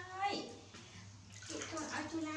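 A baby macaque crying in long, steady-pitched wails. One wail ends with a downward slide just after the start, water sloshes in a metal basin, and another wail begins near the end.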